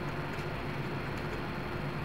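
Steady low hum and hiss of background noise, with a few faint clicks of typing on a computer keyboard.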